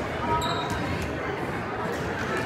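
A volleyball struck once in a gym, with short high sneaker squeaks on the hardwood court about half a second in, over the murmur of spectators talking.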